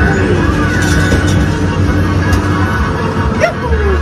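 Mario Kart arcade racing cabinets in play: game music over a steady low kart-engine drone and in-game effects.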